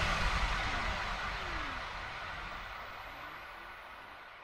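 The fading tail of a logo-intro sound effect: the noisy wash after a hit dies away steadily, with a few faint falling tones sliding down through it.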